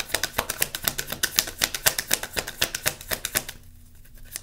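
Tarot cards being shuffled by hand: a rapid run of sharp clicks, many a second, that stops about three and a half seconds in.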